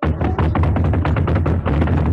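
Drum roll: rapid, even drum strokes over a deep low rumble. It starts abruptly at full loudness, building suspense as an announced drum roll.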